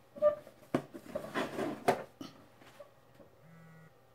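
Handling noise from a smartphone held in the hand: a few knocks and clicks with rustling in the first two seconds. Near the end comes a short low buzz of about half a second, as the Moto G4 vibrates on finishing shutting down.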